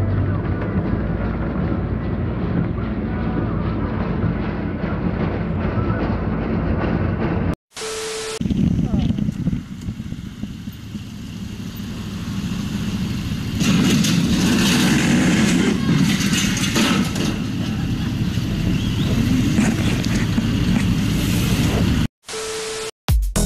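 Steady road and engine noise heard from inside a car. After a brief dropout and a short beep about eight seconds in, it gives way to wind and engine noise from a motorcycle at a junction, louder from about halfway, as a flatbed articulated lorry turns across in front.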